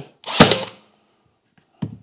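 Ryobi HP 18-gauge cordless brad nailer firing once, a single sharp shot about half a second in, driving a 2-inch brad through a hardwood board and pine into a two-by.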